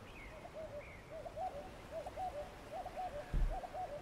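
A bird calling in short, low hooting coos repeated about twice a second, with a couple of faint higher chirps in the first second. Two dull low thumps near the end.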